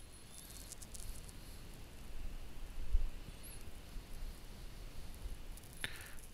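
Quiet room noise with a few soft low thumps, the loudest about three seconds in, and a few faint clicks.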